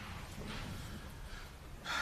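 A man breathing softly in a pause in his talk, over faint room noise, with the level rising near the end as he draws breath to speak again.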